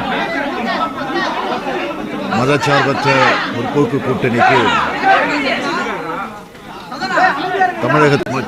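Speech only: a man speaking Tamil into press microphones in a large room, with a short pause a little after six seconds.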